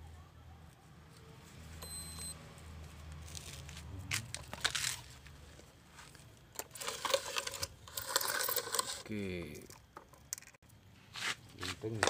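Dry, stringy roots and loose soil of a potted Ficus microcarpa bonsai being handled, rustling and crackling in irregular bursts, loudest about four to five seconds in and again around seven to eight seconds.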